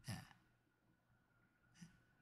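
Near silence in a pause between a man's sentences, with a faint breath right at the start.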